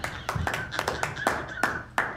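Hands clapping, sharp and irregular, about ten claps in two seconds, over a faint held tone.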